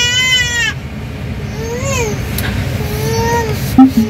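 An infant crying in a car seat inside a moving car: a long wail that breaks off less than a second in, then shorter rising-and-falling whimpering cries, over a steady road rumble. A short knock comes just before the end. The baby cries on car rides because she cannot stand them.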